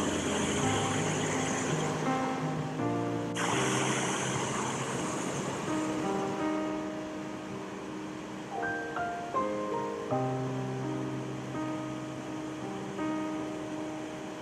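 Instrumental background music of slow, held chords. It plays over the rush of river rapids, which is louder in the first few seconds.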